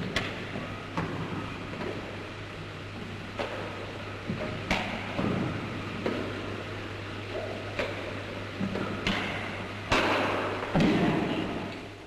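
Badminton rackets hitting a shuttlecock in a rally: sharp hits spread a second or several apart, over the steady low hum of an old newsreel soundtrack. There is a louder noisy stretch near the end.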